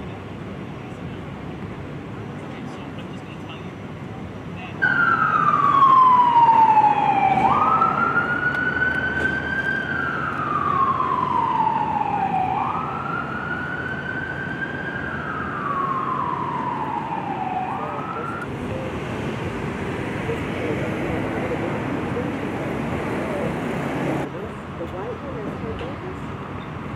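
An emergency vehicle's siren wailing loudly. It starts abruptly about five seconds in, sweeps slowly down and up in pitch about every five seconds, and cuts off after about thirteen seconds.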